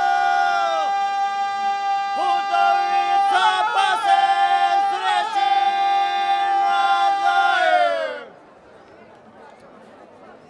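Unaccompanied group of folk singers singing a traditional Sinj song, holding long, steady notes in close harmony. The voices slide downward together and stop about eight seconds in, leaving faint crowd murmur.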